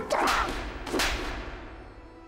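Two comic slap sound effects, each with a swishing whoosh, about a second apart.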